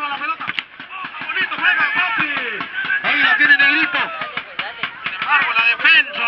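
Men's voices calling out and talking, with some voices overlapping. No distinct non-speech sound stands out.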